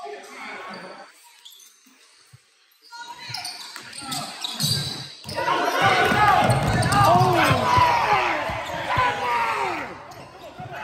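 A basketball being dribbled on a hardwood gym floor during play, with voices over it in the gym's echo. The first few seconds are fairly quiet; the action gets busy and loud from about halfway through.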